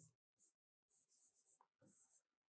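Faint scratching of a pen writing on an interactive whiteboard screen, in several short strokes.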